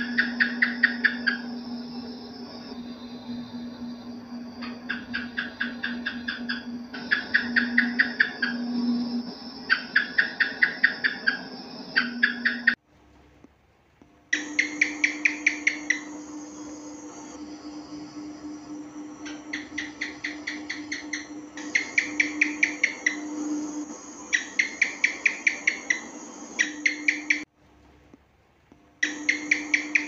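House gecko (cicak) calls: repeated trains of quick chirping clicks, about six a second, coming every few seconds over a steady low hum. The sound cuts out twice for about a second and a half, around the middle and near the end.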